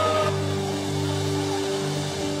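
Live worship band playing soft, sustained keyboard chords over a held bass, with no beat; the chord changes just after the start.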